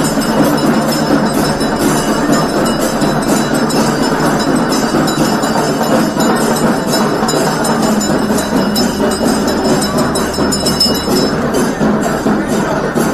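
Loud, steady din of a temple palanquin procession: crowd noise with music under it.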